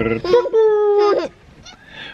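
A baby of nearly one year gives one long, high, excited squeal lasting about a second, held almost level, then goes quiet.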